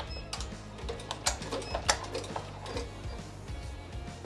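Background music over the faint, irregular clicking of a Ricoma TC-1501 multi-needle embroidery machine as it starts stitching.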